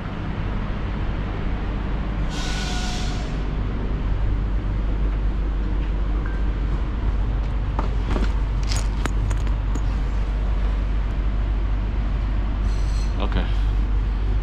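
Inside an ÖBB train carriage: a steady low rumble, with a hiss of air about two seconds in and a few sharp clicks around eight to nine seconds.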